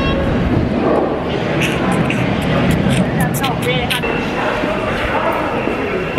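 Loud, steady rumble of a London Underground train and station, mixed with indistinct voices of people around; the rumble eases off after about four seconds.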